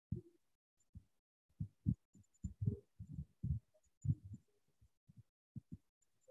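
Faint, irregular soft low thumps, several a second in loose clusters with short gaps between.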